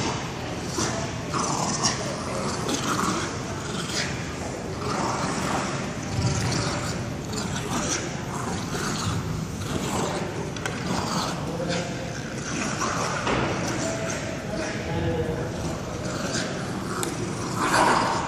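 A Staffordshire Bull Terrier and a young Staffie puppy growling continuously in play while tugging on a toy between them, with scuffling on the floor mats.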